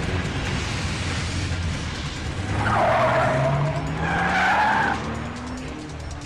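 A car engine revving with its pitch rising through the second half, and tyres squealing twice, loudest in the middle, over background music.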